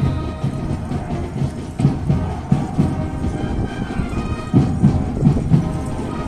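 Band music from the stadium field heard from high in the stands: drum beats under held melodic tones, with a low rumble beneath.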